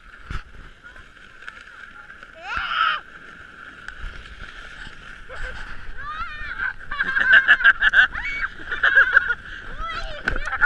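A child and an adult giggling on a sled sliding down a snowy hill, with a short squeal about two and a half seconds in. The laughter gets louder and comes in quick bursts over the last few seconds, over a steady rush.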